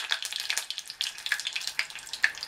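Cicada larvae deep-frying in a small saucepan of hot oil: an irregular crackle of sharp pops over a faint sizzle. The oil is spattering hard, which the cook suspects comes from oil heated too much or moisture not fully dried off the larvae.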